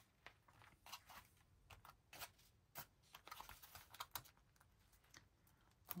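Faint paper rustles and light scattered taps and clicks of hands pressing and smoothing a glued paper piece down onto a junk journal page.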